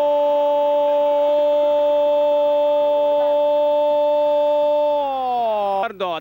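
A football commentator's long held "gooool" goal call: one steady, loud note sustained for about five seconds, then falling in pitch near the end.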